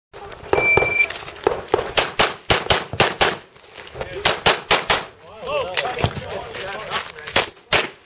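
A shot timer beeps once, half a second long, then a semi-automatic pistol fires rapid strings of shots, about four a second, with a short break and a few slower shots near the end.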